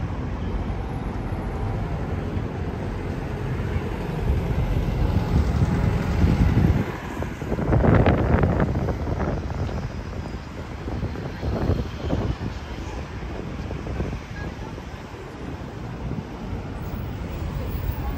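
City street traffic at a road junction: vehicles passing, with wind rumbling on the microphone. The loudest moment is a surge of sound about eight seconds in.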